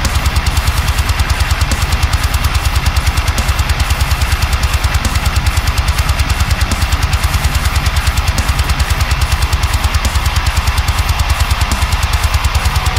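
Heavy metal mix: a drop-F tuned eight-string electric guitar through a high-gain amp simulator, playing a low riff over a fast, even kick-drum pulse.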